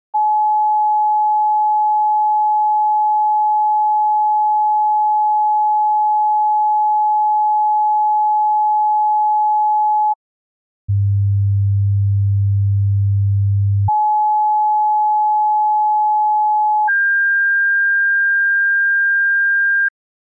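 Pure sine-wave test tones at a steady level: 850 Hz for about ten seconds, then, after a short gap, 100 Hz for about three seconds, 850 Hz again, and 1600 Hz for the last three seconds. The sequence compares the arithmetic midpoint, 850 Hz, with its two ends. It sounds much closer to 1600 than to 100, because the ear hears pitch logarithmically.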